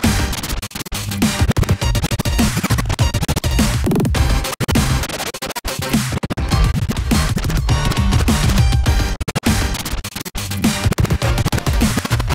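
Turntablist scratching and cutting records on turntables over a heavy bass-driven beat; the music is chopped into stuttering fragments with frequent abrupt breaks.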